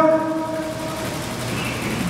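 Steady room noise of a large hall during a brief pause in a man's amplified speech. The echo of his last word dies away at the start.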